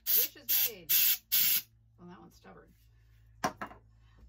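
A can of compressed air sprayed in four quick, loud bursts within the first second and a half, blowing out birthday candles.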